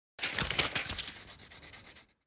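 Scribbling on paper: quick scratchy strokes that settle into a rapid, regular back-and-forth and then cut off suddenly.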